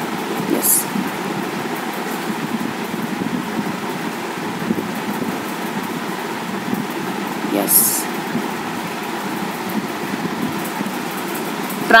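A steady background noise runs throughout, with two brief high hissy sounds, one just after the start and one about eight seconds in.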